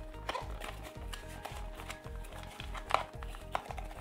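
Soft background music with a steady beat. A few light clicks and rustles come from a small cardboard box being opened by hand, one near the start and two near the end.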